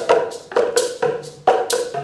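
Boomwhackers, tuned plastic tubes, struck against a floor by an ensemble in a quick interlocking rhythm: short, hollow, pitched pops on a few different notes.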